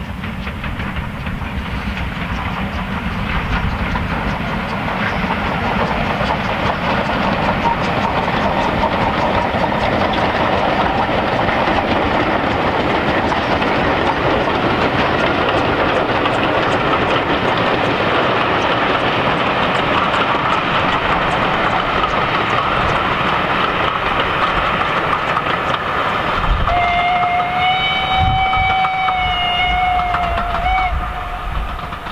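Steam-hauled passenger train running past, a rail rumble that builds over the first few seconds and then holds steady. Near the end a steam whistle sounds one long blast of several tones at once.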